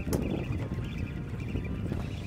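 Wind and sea noise on the open deck of a fishing boat drifting offshore: a steady low rumble that flickers throughout, with one sharp knock at the very start.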